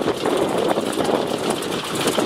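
Biplane's engine idling with its propeller turning, a steady drone.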